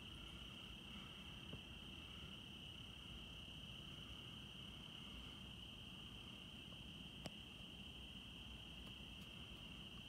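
Faint, steady cricket chorus: one high, unbroken trill, with a single small click about seven seconds in.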